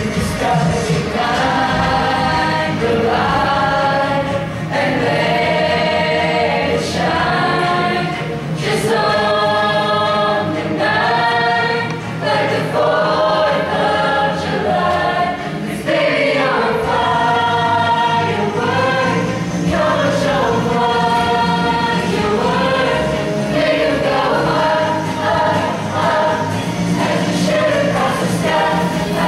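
High school show choir of mixed voices singing a pop song together, loud and continuous.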